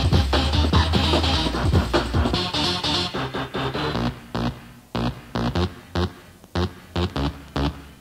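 Early-1990s hardcore rave music in a live DJ mix. About two and a half seconds in, the heavy bass drops out, and from about four seconds the track thins to sparse short hits, roughly three a second, with quiet gaps between them: a breakdown.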